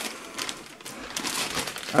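A clear plastic zip-lock bag of spare drone propellers crinkling irregularly as it is handled.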